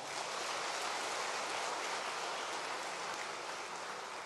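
Audience applauding: many hands clapping in a steady, even patter that eases off slightly toward the end.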